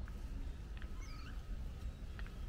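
Small birds chirping, with a couple of short high gliding calls about halfway through, over a low steady rumble.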